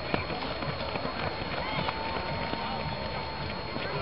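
Footsteps of a pack of runners pounding past on a grass and dirt course, a quick uneven patter of many feet, with voices in the background.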